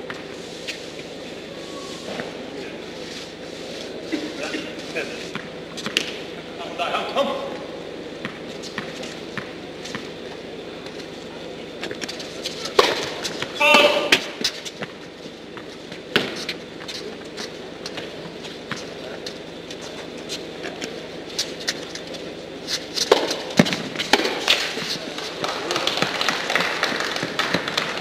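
Tennis balls struck by rackets and bouncing on an indoor hard court during a doubles point: a series of sharp, separate pops spaced irregularly through the rally. Brief player shouts are heard about a third and halfway in, and the sound grows busier near the end as the point finishes.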